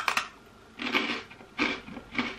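A crunchy breadstick dipped in soft cheese and Marmite being bitten with a sharp crunch, then chewed with two more crunches about a second and a second and a half in.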